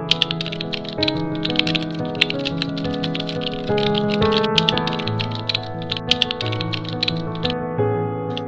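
Computer keyboard typing, a rapid run of key clicks that stops near the end, over background music.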